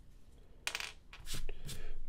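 Plastic ballpoint pen cap being pulled off and handled: a few short clicks and scrapes, the sharpest a little over half a second in, with more handling noise toward the end.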